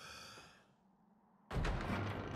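A person sighing, a breathy exhale lasting about half a second. About a second and a half in, a sudden loud, noisy sound cuts in and carries on.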